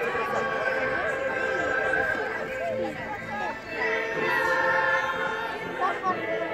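Young children's voices singing together in a ragged chorus, holding notes, with chatter from others around.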